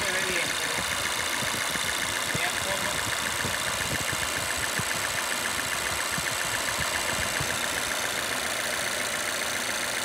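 Supercharged four-cylinder petrol engine of a 2017 Volvo XC90 idling steadily, with a fast, even ticking over the running sound. The engine is being checked for random misfires (code P0300).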